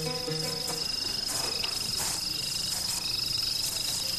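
Soundtrack music trailing off in the first second, leaving a steady, high-pitched chirring of crickets as night ambience.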